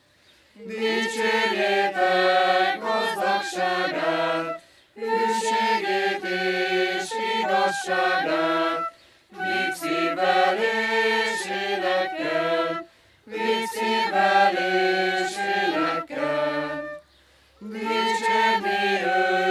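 Mixed church choir of a Reformed congregation singing unaccompanied in several parts, in sung lines of about four seconds with short breaks between them.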